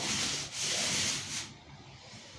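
Paint roller spreading wet paint across a wall: a rough, sticky rasping in two strokes that stops about a second and a half in.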